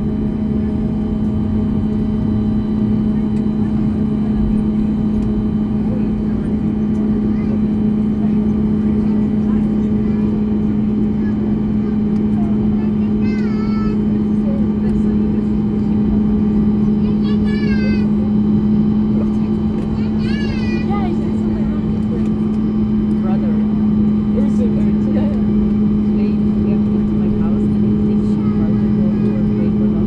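Cabin noise of a Ryanair Boeing 737 taxiing after landing: the jet engines at taxi power make a steady rumble with a constant low hum. A few brief voices rise above it about halfway through.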